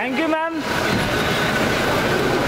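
Steady noisy rumble of an underground car park, with a faint steady whine running through it, echoing off the concrete; a voice calls out briefly at the very start.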